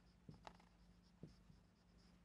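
Faint marker strokes on a white writing board, a few short scratches, over near silence.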